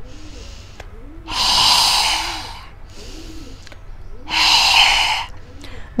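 A woman's forceful open-mouthed exhalations in yoga lion's pose (simhasana): two long breathy "haa" breaths out, each lasting about a second, with quieter in-breaths through the nose between them.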